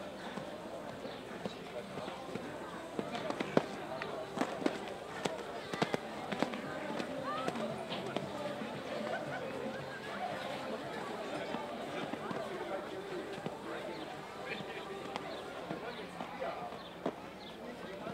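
A show-jumping horse's hoofbeats on arena sand, a run of dull thuds that is densest a few seconds in, over a constant murmur of voices.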